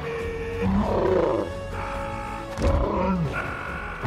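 Orchestral film score holding sustained chords, broken twice by loud, growling cries of a film character: once about a second in and again near the end of the third second, each falling in pitch.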